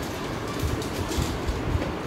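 Several Rubik's cubes being turned by hand at once, their plastic layers clicking and clacking irregularly over a steady low rumble.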